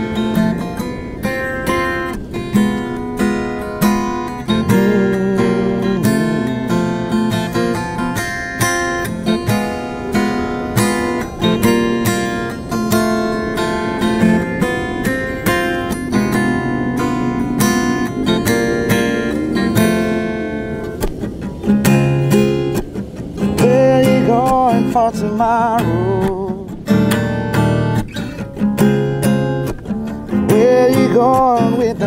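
Steel-string acoustic guitar played by hand, picked and strummed in a steady rhythm.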